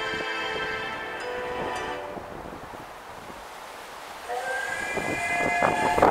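Light-show music fades out over the first two seconds. About four seconds in, a recorded steam locomotive whistle begins over loudspeakers, growing louder, with faint regular chuffs under it.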